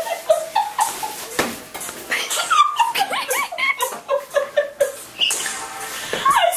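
Several people squealing and laughing in short, high-pitched cries that bend up and down, with sharp knocks and bumps of scuffling among them.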